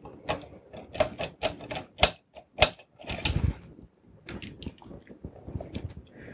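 Screws being driven by hand with a screwdriver to fasten an 80 mm fan into a metal drive enclosure: irregular clicks and short metal scrapes.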